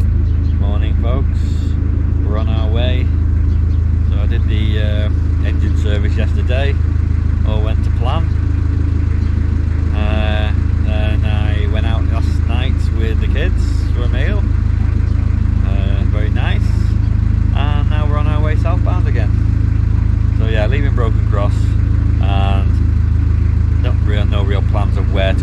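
A narrowboat's diesel engine runs steadily under way, an even, deep drone with no change in revs. A man's voice comes in snatches over it.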